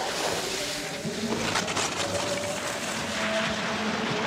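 Downhill skis running fast on a hard, icy course: a steady rushing hiss of edges scraping the snow, mixed with wind, with short scraping surges as the skier carves. Faint held tones sound in the background.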